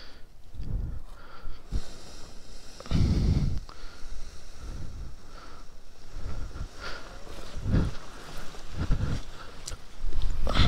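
Gusty wind buffeting the microphone in irregular low rumbles, the strongest about three seconds in and more near the end.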